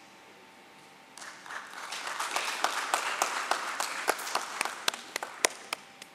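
Audience applause that starts about a second in and quickly fills out. It then thins to a few scattered single claps that die away near the end.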